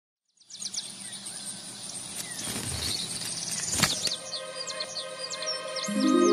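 Birdsong with many quick high chirps over a soft, steady low hum, beginning about half a second in. It swells to a brief sharp hit near four seconds in.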